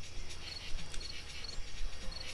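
A cricket chirping: short, high chirps repeating about twice a second over a faint low hum.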